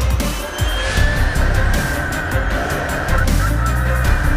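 Formula E car's electric drivetrain whining at a high pitch as it drives past, the whine falling slightly in pitch, under background music with a heavy bass beat.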